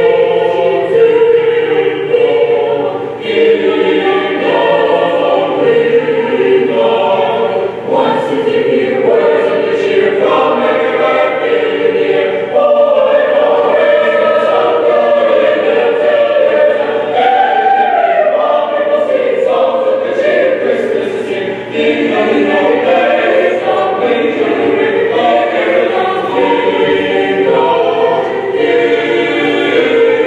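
Mixed high-school choir singing in parts, holding chords that change every second or two.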